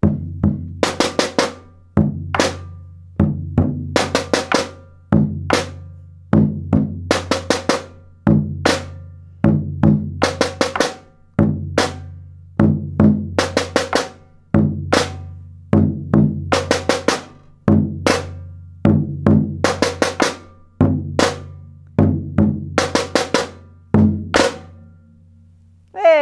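An alfaia (Brazilian maracatu bass drum) and a caixa snare drum playing an interlocking rhythm, repeated about eight times: two low booms from the alfaia, four quick strokes on the caixa, then a boom and a final hit on both drums together. The bass drum's low ring fades out after the last repeat near the end.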